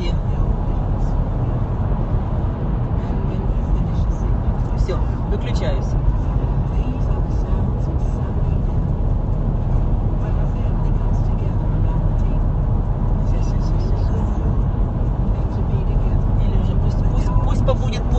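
Steady road and engine rumble heard inside a moving car's cabin at highway speed.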